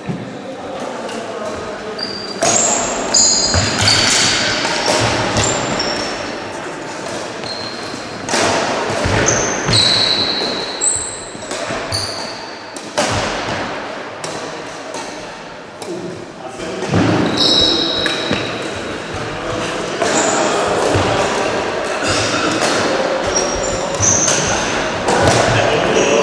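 Badminton being played in a sports hall: shoes squeak in short high chirps on the wooden court floor among footsteps and sharp racket hits, with indistinct voices and the echo of a large hall.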